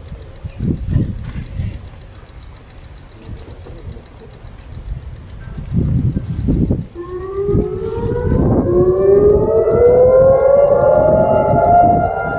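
Israeli air-raid siren sounded as the Yom HaZikaron memorial siren: about seven seconds in it winds up, rising in pitch, then holds a loud steady wail. Before it there is only a low rumbling noise.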